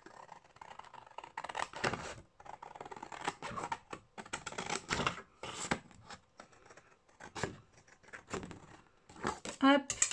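Scissors cutting through a large sheet of patterned scrapbooking paper: a run of irregular snips mixed with the crackle and rustle of the sheet being handled.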